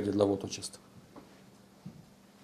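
A man's voice speaking into podium microphones, which stops less than a second in, leaving a pause with faint room tone and a low steady hum.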